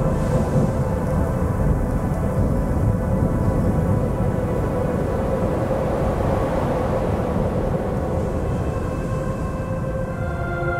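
Ambient drone music of steady held tones over a continuous low, rolling thunder rumble, with a swell of noise about two-thirds of the way through.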